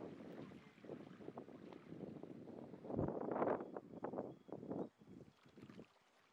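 Small waves washing on a sandy beach, with some wind, faint. One swell comes about three seconds in, and the sound dies away near the end.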